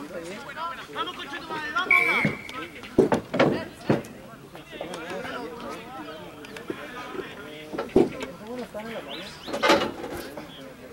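Overlapping voices of players and onlookers talking and calling out around the pitch, with several loud shouts. One short, high whistle blast about two seconds in, typical of a referee's whistle.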